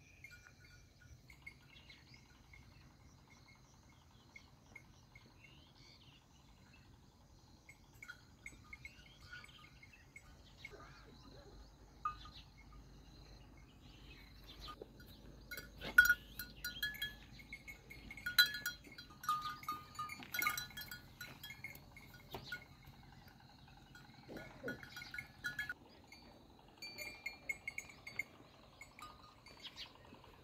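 Outdoor farmland ambience with scattered animal calls and short bell-like clinks. The sounds are sparse at first and busiest in the second half.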